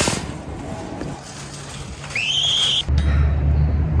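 A metal shopping cart clattering, then a short high squeak about two seconds in. From about three seconds wind rumbles on the phone microphone outdoors.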